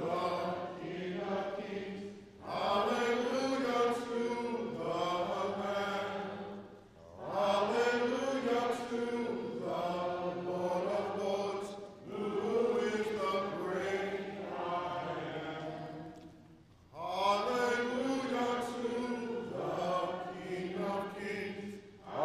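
A man's voice in long, sung phrases, each about five seconds long, with short breaks between them, like a sung or intoned prayer.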